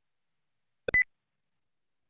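A single short electronic beep about a second in: one brief high tone with a faint click just before it.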